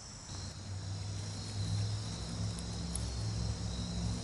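Crickets trilling steadily in the grass, several high thin tones held without a break, over a low steady hum that comes in just after the start.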